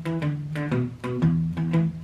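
Les Paul electric guitar playing a Chicago blues shuffle bass line on its low strings in E: a steady run of single picked notes, about four a second, stepping up and down.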